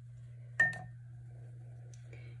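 A single sharp clink about half a second in, with a short ringing tone that fades: a paintbrush knocking against the rim of a jar while being loaded with wet paint. A steady low hum runs underneath.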